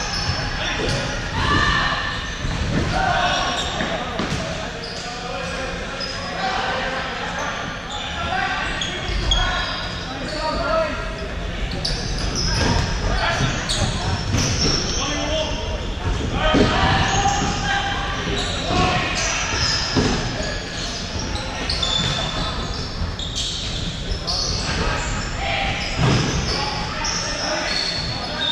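Sounds of an indoor futsal game in a large echoing hall: players' voices calling across the court and the ball knocking on the wooden floor, with scattered sharp thuds of kicks.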